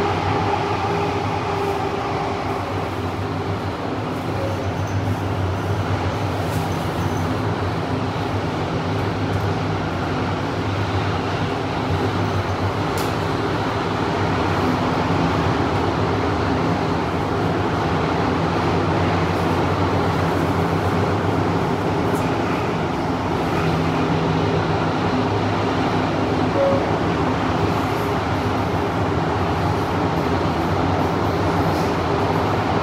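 Running noise inside a Kawasaki–CRRC Qingdao Sifang CT251 metro train travelling between stations at a steady speed. A steady low hum sits over the rumble of the wheels on the rail.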